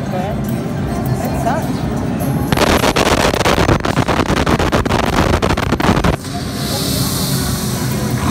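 Sphinx 4D slot machine bonus sound effects. Background music plays, then about two and a half seconds in a loud, crackling rush of sandstorm noise sweeps in. It cuts off suddenly about three and a half seconds later, and a high shimmering tone follows as the sun appears on the screen.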